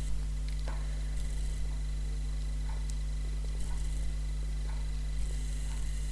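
Steady low electrical hum, with a few faint, soft ticks scattered through it.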